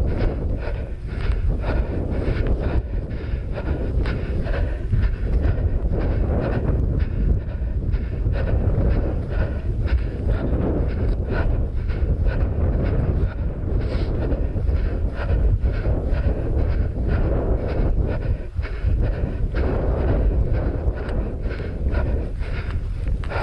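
Wind buffeting a head-mounted GoPro's microphone, over a runner's regular footfalls swishing through rough moorland grass at about two or three strides a second.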